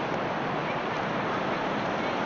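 Steady, even rushing background noise with no distinct events.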